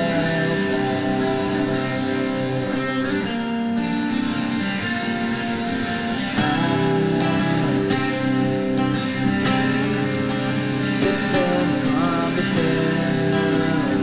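Acoustic guitar and electric guitar playing together in a song's instrumental passage, sustained chords and picked notes; the playing grows fuller and louder about six seconds in.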